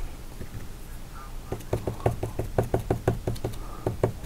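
A paintbrush tapping against the painting in a quick run of light knocks, about six a second, starting about one and a half seconds in. It is dabbing paint on to build foliage texture in the trees.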